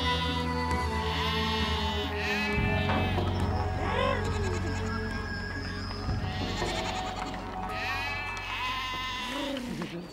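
A herd of goats and sheep bleating again and again, over background music with a steady low drone.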